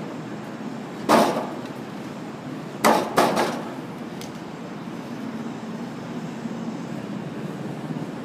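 Heavy wooden timbers knocking together as they are handled and set in place: one sharp knock about a second in, then three in quick succession around three seconds, over steady background noise.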